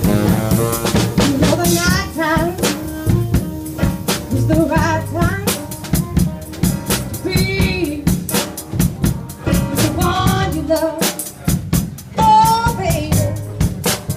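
Live rhythm-and-blues band playing: a drum kit keeps the beat under electric piano, with saxophone phrases that rise and fall every couple of seconds.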